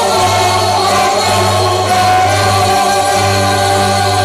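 A Tamil film song with singing, played loudly through stage loudspeakers, over a steady held bass note.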